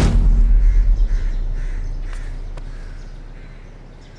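A deep, low boom, a film's dramatic sound effect, hits at the start and slowly fades away over about four seconds.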